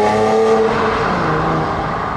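A car engine held at high revs over a rush of exhaust noise. Its pitch drops a little about a second in, and the sound eases off toward the end.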